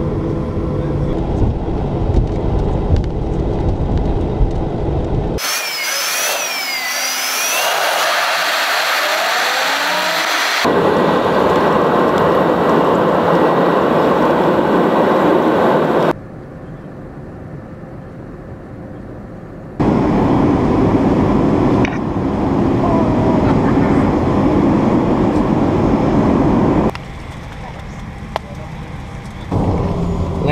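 Jet airliner engines and cabin noise heard from a seat by the wing during the takeoff and climb-out. The sound is cut together from several segments and changes abruptly each time, with two quieter stretches in the second half.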